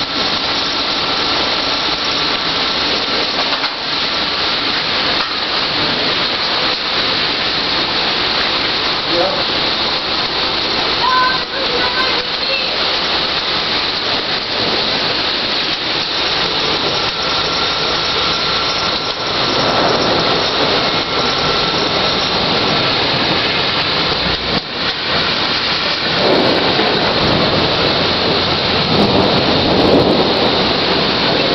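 Torrential thunderstorm rain pouring down in a steady, loud hiss, with gusting wind; the noise swells twice, about two-thirds of the way through and again near the end.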